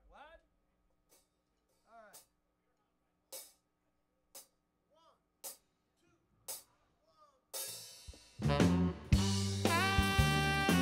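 Soft cymbal or stick ticks from a drum kit, about one a second, counting off the tempo; then the blues band comes in near the end with bass, drums and tenor saxophone, loud and full.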